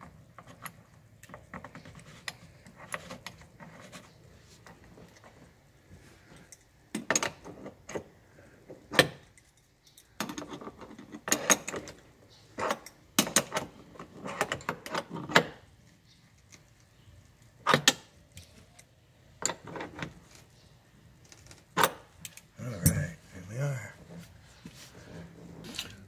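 Metal seat-belt mounting hardware (the belt's steel anchor plate, bolt and washers) clinking and rattling as it is handled, in scattered sharp clicks that come in short clusters.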